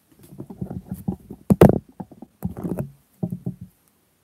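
Handling noise close to the microphone: irregular rubs and soft knocks as hands move the crochet piece and hook on the mat. The loudest knock comes about one and a half seconds in, and the noise stops shortly before the end.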